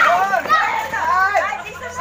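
A group of children and adults shouting and cheering together, many high voices overlapping.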